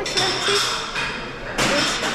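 Rustling and clattering noise in a large dining room, in two stretches, with faint voices in the background.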